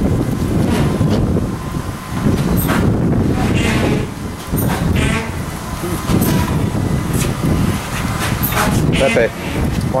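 A steady low rumble throughout, with voices talking in the background.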